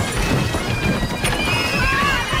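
Film trailer soundtrack: music mixed with a loud, dense rumble of massed-army battle noise. Near the end, high wavering cries begin.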